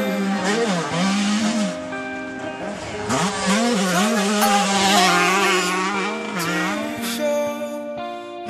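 Dirt bike engine revving up and down, its pitch rising and falling repeatedly, mixed over background music. The music takes over near the end.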